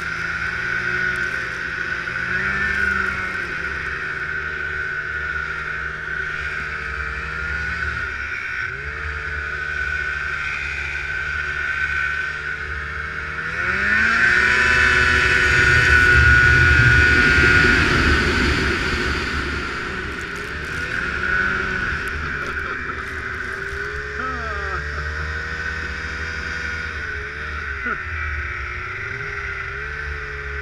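Snowmobile engine running under way through deep snow, revving up a little before halfway, holding high and loudest for about five seconds, then easing back to a lower steady pitch.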